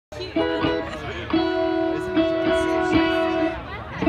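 Amplified electric guitar picking a few short notes, then holding one note and re-picking it about three times, as if tuning or noodling between songs.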